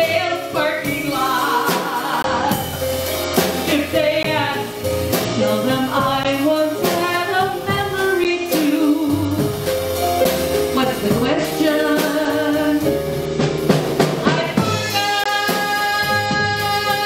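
A woman singing live into a microphone, accompanied by an electronic keyboard and a drum kit with cymbals. Near the end a chord is held on steady tones.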